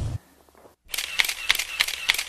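Smartphone camera shutter firing in a rapid burst, a quick run of sharp clicks at about eight a second starting about a second in.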